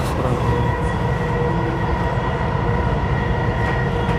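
Dubai Metro electric train running along its elevated track, heard from inside the carriage: a steady rumble with a thin, steady whine over it.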